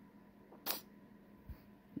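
Quiet room tone broken by one short rustling click of handling noise a little over half a second in, and a faint low bump near the end.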